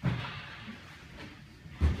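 Two dull metallic knocks from handling the valves and fittings of a stainless steel extraction column, one at the start and a louder one near the end.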